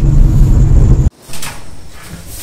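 Loud low rumble of a car driving, heard from inside the cabin, which cuts off abruptly a little past halfway. A much quieter stretch follows, with one brief faint sound.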